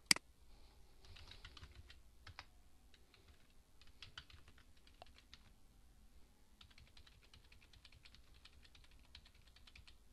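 Faint typing on a computer keyboard in three runs of quick keystrokes, the last the longest, after a single sharp click at the start.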